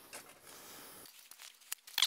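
Shovel blade scraping through a pile of damp soil and compost mix as it is turned, a faint gritty scrape for about a second. Then scattered small ticks of soil, and a sharper knock near the end.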